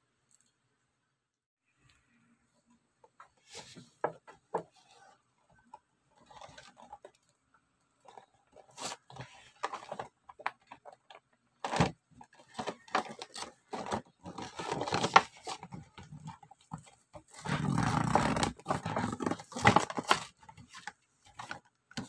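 A toy blister pack being opened by hand: the plastic bubble crackling and clicking and the cardboard backing tearing. The noises come in scattered bits at first and grow louder and longer in the second half.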